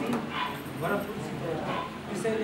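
Speech only: a man reading aloud from a written report in Nepali, in short phrases.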